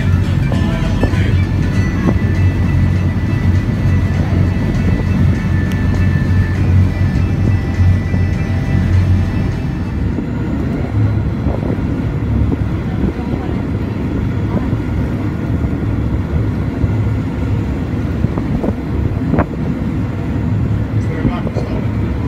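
Amphibious tour bus's engine running with a steady low drone while the bus cruises on the water, with music and voices in the background.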